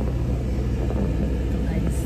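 Car engine idling in a stationary car, heard from inside the cabin as a steady low rumble.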